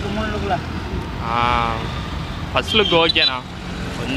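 Steady road traffic noise, with men's voices talking in short stretches over it.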